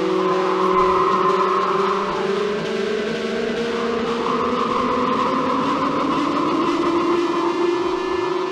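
Dark ambient album intro: several sustained droning tones, some slowly gliding in pitch, over a dense rumbling, noisy wash, with no beat.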